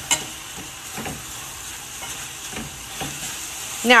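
Chicken breast pieces sizzling in a stainless steel pan as they are stirred with metal tongs, a steady frying hiss with a few soft knocks and scrapes of the tongs.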